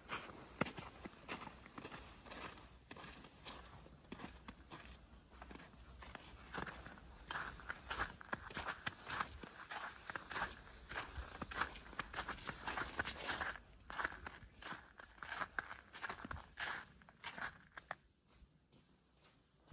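Footsteps walking on a snow-covered, slushy paved path, a steady run of irregular steps.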